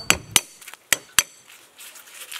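A cleaver knocking sharply on a thick wooden chopping block as lemongrass stalks are cut, four knocks in just over a second.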